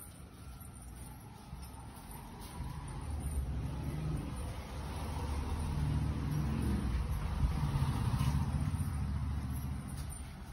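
Low engine rumble from a passing motor vehicle, building over several seconds and easing off near the end.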